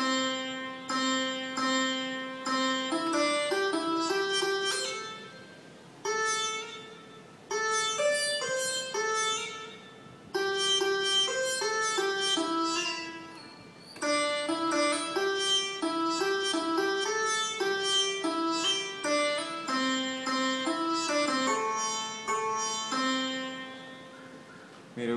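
A melody in Mohana raagam played on a keyboard in an Indian plucked-string voice, one note at a time in short phrases with brief pauses between them.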